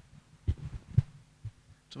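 Microphone handling noise: a few dull low thumps, the loudest about a second in.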